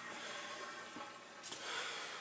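A steady soft hiss with no distinct events, fading slightly before the next words.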